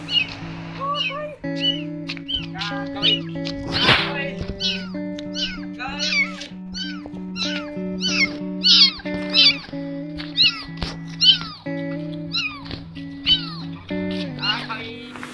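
A young kitten meowing over and over in short, high-pitched calls, about two a second, over background music.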